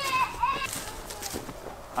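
A brief high-pitched voice at the start, then rustling and a few light knocks as a leather cooking apron is picked up and handled.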